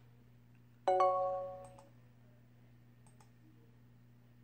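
A single computer chime about a second in, a bell-like tone of several pitches that fades out over about a second. Then two pairs of faint mouse clicks follow, while the text-to-speech reading is stopped and restarted.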